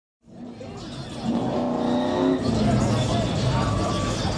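Car engine running and revving, with the voices of a crowd mixed in. A pitched engine note rises slightly in the first half, then gives way to a steady rumble.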